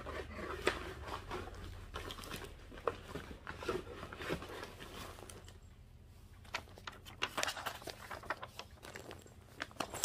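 Plastic zip-top bags and paper seed packets crinkling and rustling as they are picked through and handled. The crinkles and soft taps come irregularly and grow busier in the last few seconds.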